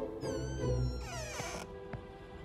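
Cartoon soundtrack: low music notes under a pitched sound effect that falls in pitch, followed about a second in by a denser sweep that also falls.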